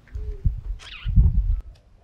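A man's short, low hum that dips in pitch at its end, followed about a second in by a brief low murmur.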